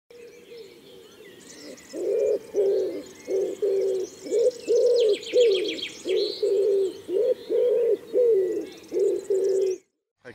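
Birdsong: one bird gives a long series of low, evenly repeated cooing notes, about two a second, starting about two seconds in, while smaller birds chirp higher up, with a brief rapid trill about halfway through.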